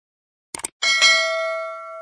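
Notification-bell sound effect for a subscribe animation: a few quick clicks about half a second in, then a bright bell ding struck twice in quick succession, its tones ringing on and slowly fading.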